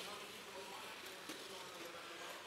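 Faint arena background of a robotics match: a low, steady haze of noise with a faint whine, and a soft tick about a second and a quarter in.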